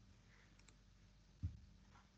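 Near silence broken by a few faint computer mouse clicks, and a short low thump about one and a half seconds in.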